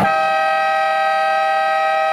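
Basketball game buzzer sounding one long, steady buzz that stops play.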